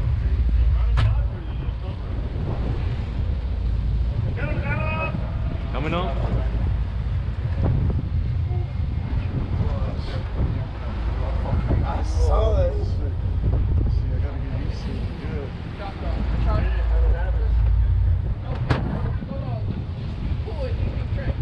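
Wind buffeting the microphone over the running engines of a sportfishing boat: a steady low rumble that swells now and then, with short bits of faint voices.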